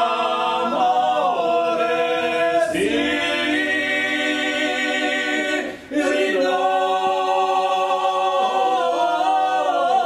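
Male voices singing a Corsican paghjella a cappella: three-part polyphony in long held chords with sliding, ornamented notes. The voices break off briefly for a breath about halfway, then come back in together.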